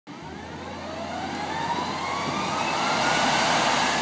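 Jet engine spooling up: a whine rising steadily in pitch over a rushing noise, growing louder throughout.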